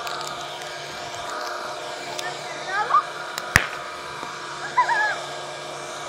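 A squeeze-and-throw toy popper 'grenade' on concrete gives one sharp crack about three and a half seconds in, over a steady background hum. Short chirping glides come just before and after the crack.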